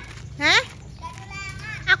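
Voices shouting and chattering: one loud rising shout about half a second in, then quieter talk.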